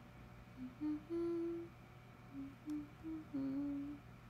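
A young woman humming a short tune of about seven notes, two of them held longer.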